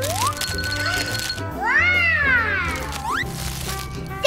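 A cat meowing over background music: a rising call, then one long meow that rises and falls in pitch, then a short rising call.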